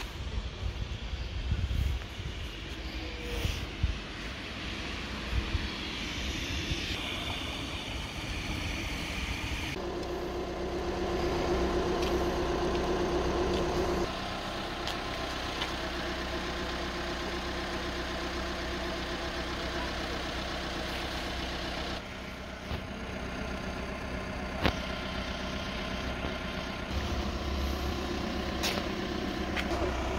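Vehicle engines idling with a steady low hum, which changes abruptly about ten, fourteen and twenty-two seconds in. Brief low rumbles in the first few seconds.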